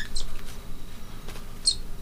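A cockatiel held in a towel gives two short, high-pitched chirps, one a quarter second in and one near the end.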